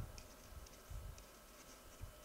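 Marker pen writing: faint, short scratching strokes of the tip on the writing surface as a line is drawn and letters begin.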